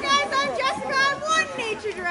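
High-pitched human voices calling out in short, sharply rising and falling cries, without clear words.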